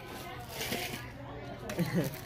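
Indistinct voices and chatter in a room, with a brief rustling noise about half a second in.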